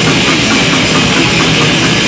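Live thrash metal band playing loud and without a break: distorted electric guitars, bass and drum kit.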